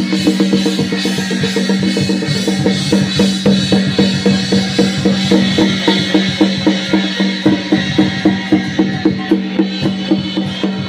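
Chinese lion-dance percussion: a drum beaten in a steady, fast beat of about three strokes a second, over a continuous metallic ringing.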